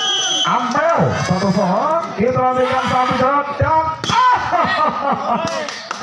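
Excited voices calling with drawn-out syllables over a crowd during a volleyball rally, with a few sharp knocks of ball hits about two-thirds of the way through and near the end.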